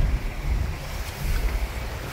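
Low steady rumble of a first-generation (NA) Mazda MX-5 Miata driving slowly, heard from inside the car, with wind buffeting the microphone.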